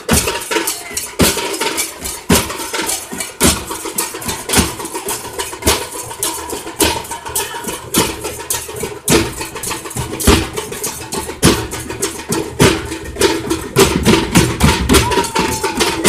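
Large drums beaten with sticks in a loud, driving procession rhythm: a heavy accented stroke about once a second with fast lighter strokes in between.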